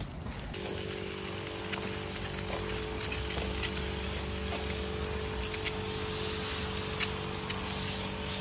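Motorised pesticide sprayer's pump starting about half a second in and running steadily with a hum, with the hiss of spray from the wand nozzle over young radish plants.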